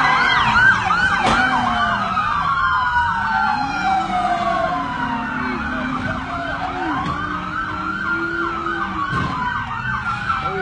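Police car sirens sounding together, one on a fast yelp and another on a slow wail that falls and rises over a few seconds, over the noise of traffic.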